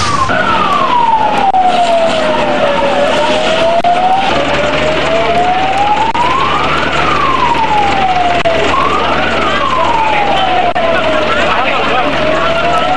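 An emergency-vehicle siren wailing, slowly rising and falling in pitch with sweeps a few seconds long, over the chatter of a crowd. A low steady hum joins about four seconds in.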